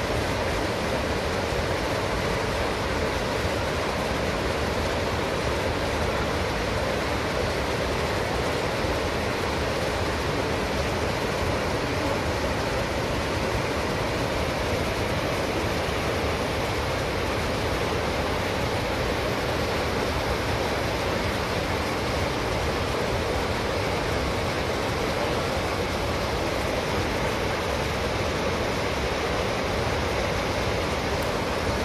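Whitewater rapids on the Deschutes River rushing steadily, an unbroken wash of water noise.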